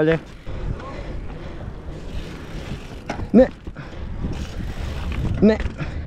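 Mountain bike rolling over stone paving slabs: a steady rumble and hiss from the knobby tyres and the rattling frame.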